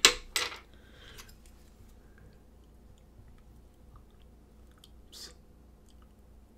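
Close handling noises of a fountain pen and a hand loupe: two sharp clicks right at the start with rustling up to about a second in, then faint small ticks, and a short rustle about five seconds in.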